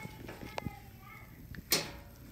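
A few small clicks and then one sharp, louder click near the end, over faint background voices in a quiet room.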